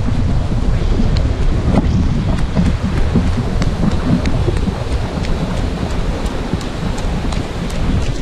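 Wind buffeting an action camera's microphone as it is carried at a run: a steady low rumble with light ticks about every half second.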